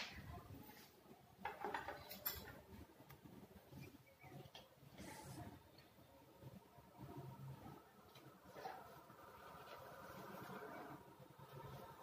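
Near silence with faint rustling and scraping as pieces of dried halwa are peeled and lifted off a plastic sheet by hand, with a few soft knocks about one and a half to two seconds in.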